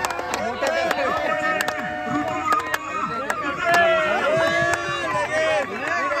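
A bamboo flute sounding a held note for about two seconds early on, then voices talking over it, with many sharp clicks throughout.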